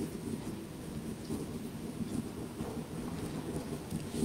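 Low, uneven rumbling and rustling from a clip-on microphone rubbing against vestments as its wearer walks.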